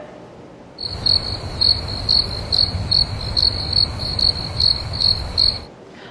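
Cricket chirping sound effect, the classic 'crickets' gag for an awkward unanswered silence: a steady high trill pulsing a little over twice a second over a low rumble. It starts abruptly about a second in and cuts off shortly before the end.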